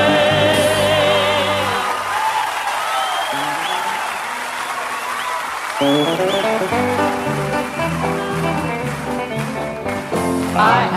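Southern gospel male vocal quartet with band: a held vocal chord fades out about two seconds in, a few seconds of quieter noise without clear notes follow, and the singers and band come back in suddenly about six seconds in.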